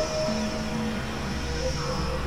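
Experimental electronic drone music from synthesizers: several held tones that shift pitch every second or so over a low rumble and hiss.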